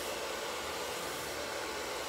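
Hair dryer blowing steadily, an even rushing hiss.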